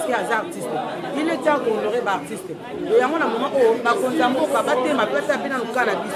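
Speech only: a woman talking into a microphone, with other voices chattering.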